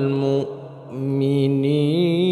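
A man chanting Quran recitation in maqam Bayati. He holds a long, wavering note, breaks off for about half a second near the middle, then takes up another long held note.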